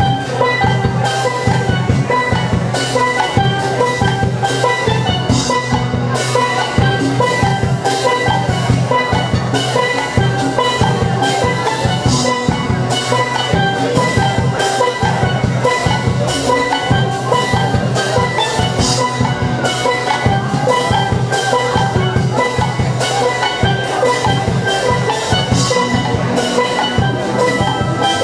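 Steel orchestra playing live: many steelpans ring out melody and chords over the low notes of bass pans, with percussion keeping a steady beat throughout.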